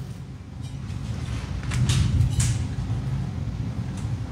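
A low, steady rumble that swells through the middle, with a few faint clicks.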